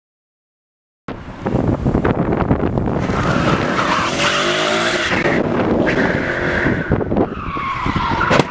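A Ford Mustang's engine revving hard while its tyres squeal and skid as it powers out and slides into a turn. The sound cuts in suddenly about a second in and stays loud.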